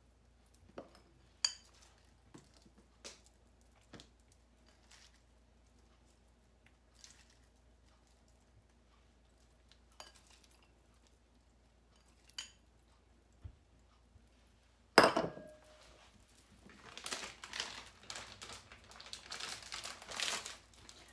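Hands sprinkling shredded lettuce from a bowl onto tortillas, with scattered light taps and clicks of the bowl. About 15 seconds in, a loud clunk as a bowl is set down on the stone countertop, followed by a few seconds of rustling.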